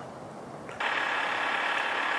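A car engine idling steadily while warming up on a cold morning, coming in suddenly a little under a second in after a quieter hush.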